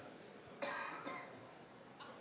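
A person coughing about half a second in, a short cough in two quick bursts.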